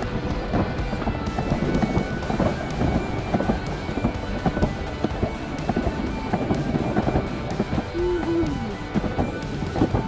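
Background music over the rolling rumble and clatter of an alpine slide sled running fast down its concrete track.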